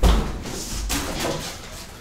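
A sudden low thump, like a knock or bump against a desk or microphone, followed a little under a second later by a softer, duller knock.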